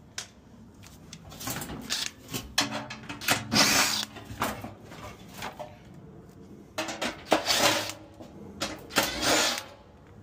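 Cordless impact driver running in short bursts as it drives screws on a sheet-metal blower housing, in two spells, the second starting about seven seconds in, with metal clatter from the housing.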